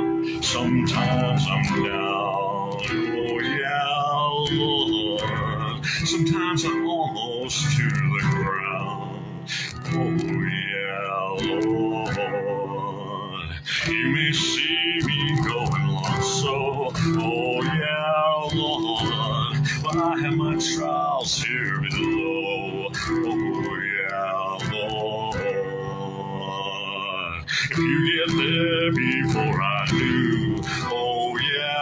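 A man singing to guitar accompaniment, with long held and gliding vocal notes, picked up through a phone's microphone.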